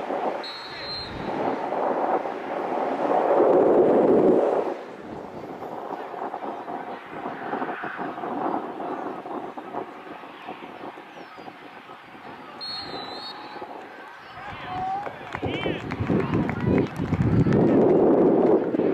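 Outdoor sideline ambience at a lacrosse game: distant voices of players and spectators over wind on the microphone. The wind swells a few seconds in and again near the end, and a few short high chirps break through.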